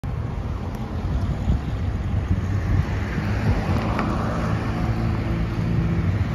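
Cars driving past on a road, engines and tyres, one swelling as it goes by about midway, with wind rumbling on the microphone.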